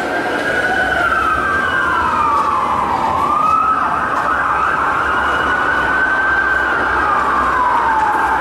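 Emergency-vehicle siren sound effect wailing in slow sweeps. The pitch falls over about three seconds, jumps back up and holds, then falls again near the end.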